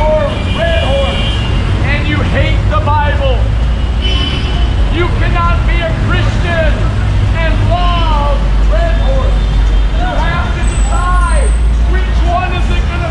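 A man's voice shouting in long rising-and-falling phrases, street preaching, over a steady low rumble of traffic.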